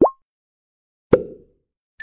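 Cartoon sound effects for an animated channel logo: a quick rising 'bloop' right at the start, then a short pop with a brief low thud about a second in.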